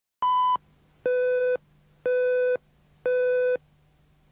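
Four electronic beep tones about a second apart. The first is short and higher-pitched, and the other three last about half a second each at a lower pitch, with a faint low hum beneath.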